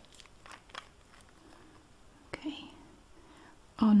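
Cap of a Maybelline Fast Gel nail lacquer bottle being unscrewed: a sharp click as it breaks loose, then a few faint ticks as it turns off.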